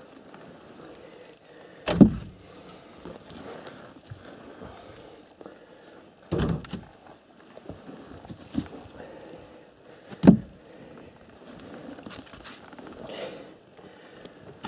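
Firewood logs knocking against one another as they are handled and set down on a pile. There are three heavy wooden thumps about four seconds apart, with lighter knocks and rustling in between.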